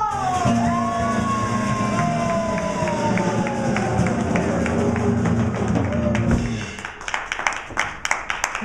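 Live acoustic guitars holding a strummed chord under one long sung note that slides slowly down in pitch, both stopping together about six and a half seconds in. An audience is clapping along in time throughout, and only the clapping is left near the end.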